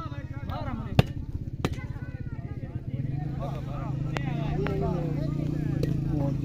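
A volleyball struck by players' hands: four sharp slaps, the loudest about a second in. Players' and onlookers' voices run throughout, over a steady low drone that grows louder about halfway.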